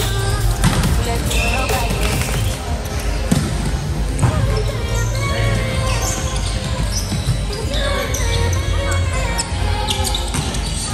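Volleyball being hit and bouncing in a gymnasium hall, with sharp smacks echoing. Players' voices and music can be heard throughout.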